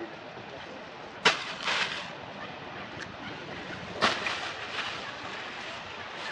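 A steady outdoor background hiss with two sharp cracks, one about a second in and one about four seconds in. The first is followed by a short rustle.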